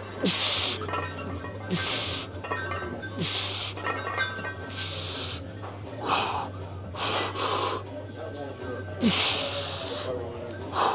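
A weightlifter's forceful hissing exhalations, one with each rep of a barbell bench press, coming about every one to two seconds, over a steady low hum.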